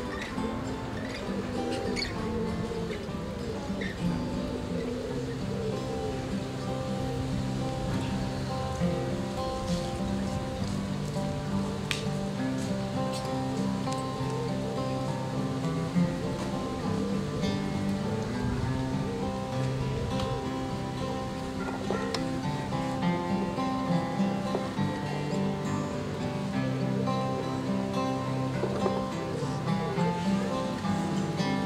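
An ensemble of acoustic guitars playing a jig together, with a steady bass line under the picked and strummed chords and melody.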